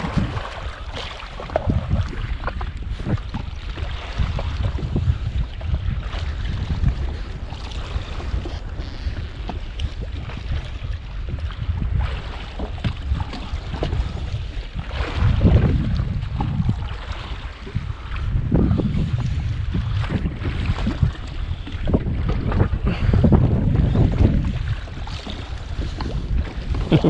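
Wind buffeting the microphone on an open sea over water lapping at a jetski, a low rumble that swells and eases unevenly.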